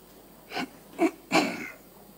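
Three short, breathy vocal bursts from a man at a close microphone, about half a second apart, the last one the longest.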